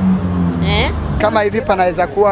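People speaking in short street interviews over city traffic, with a steady low hum under the first second or so.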